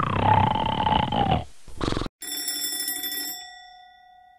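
Alarm clock ringing with a rattling bell for about a second and a half, then a short burst. A single bell tone follows, ringing on with steady overtones and slowly fading.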